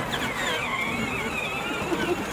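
Peg Perego John Deere Gator battery-powered ride-on toy driving off, its electric drive motors and gearboxes whining with a wavering pitch.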